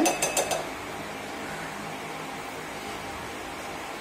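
A few quick light clicks as a plastic measuring spoon knocks against a steel flour sieve, followed by a steady background hum.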